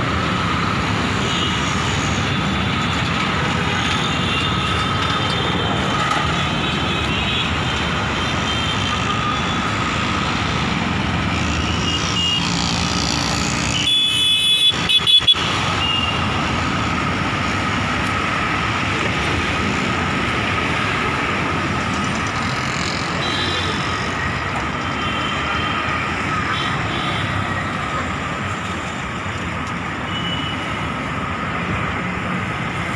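Steady city street traffic noise: a continuous hum of passing cars, motorbikes and auto-rickshaws. About halfway through the traffic briefly drops away and a quick run of sharp, loud sounds cuts in before the hum returns.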